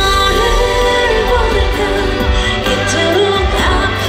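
K-pop song playing: a woman's voice singing a gliding melody over a backing track with a steady deep bass.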